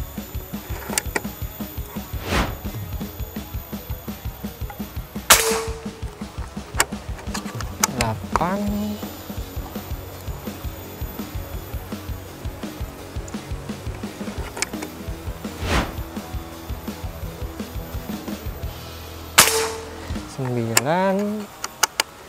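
PCP air rifle (Morgan Classic) firing twice, about five seconds in and again near the end, each a sharp crack with a short ring after it. Background music with a steady beat runs throughout.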